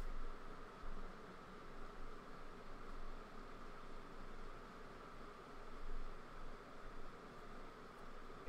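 Faint steady hiss of room tone and microphone noise, with a light low rumble and no distinct events.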